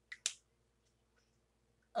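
Two quick sharp clicks about a tenth of a second apart, the second louder, from small objects handled in the hands.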